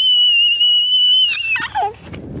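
A toddler's long, very high-pitched squeal that sweeps up, holds steady for about a second and a half, then wavers and drops away near the end.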